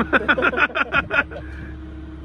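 A man laughing heartily in about seven quick bursts that stop just over a second in, over a steady low engine hum.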